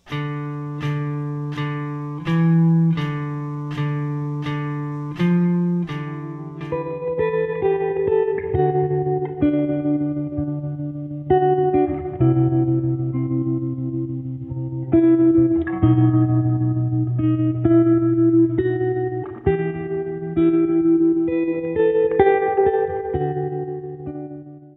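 Electric guitar playing slow single notes (D, E and F on the fourth string) over a metronome clicking at 80 beats per minute. About six seconds in, the clicks stop and background music with fuller notes and chords takes over.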